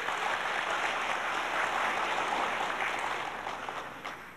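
Audience applauding, a steady clapping that dies away near the end.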